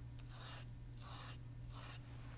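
Bristles of an old toothbrush loaded with watercolour paint dragged across watercolour paper in three short, faint scratchy strokes, making texture lines on the rose petals.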